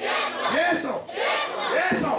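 Several voices shouting and crying out loudly over a crowd, in repeated rising-and-falling cries with short breaks between them. It is loud prayer over people receiving the laying on of hands.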